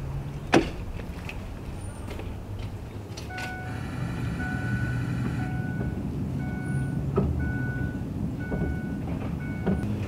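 Pickup truck's electronic warning chime sounding, first held for about two seconds and then as short repeated beeps, over a low steady hum from the truck. A single click comes about half a second in.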